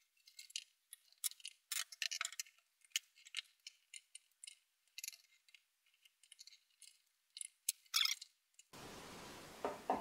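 Flat-blade screwdrivers clicking and scraping against a plastic headlight housing and lens as its clips are pried open. The sound is a faint, irregular scatter of short, light clicks.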